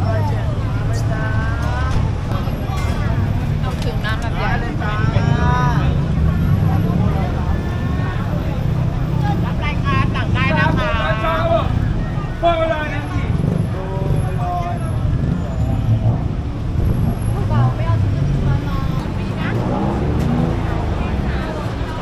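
Busy city street: a steady low rumble of road traffic under bursts of people talking close by, with a laugh about halfway through.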